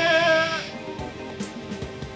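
A singer's long shouted "yeah" through the PA, wavering in pitch, over the last wash of a live punk rock band's distorted guitars and cymbals. The band stops under a second in, leaving a few loose drum hits.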